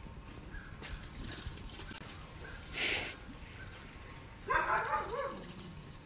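A dog vocalising outdoors: a short, wavering whining yelp about four and a half seconds in, the loudest sound here, preceded by a brief rustling burst around three seconds.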